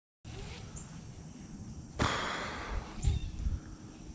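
A cast with a baitcasting rod and reel: a sudden swish about two seconds in that fades over about a second as line runs off the spool, with a few low handling thumps after it.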